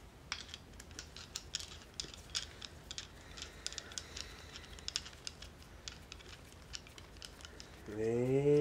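Small screwdriver driving the retaining screw into the base of a Master Lock M530 padlock: a run of light, irregular metal clicks and ticks as the screw is turned.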